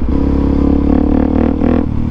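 Suzuki DR-Z400SM's single-cylinder four-stroke engine running under throttle while riding. It is loud and steady, and its note steps down near the end.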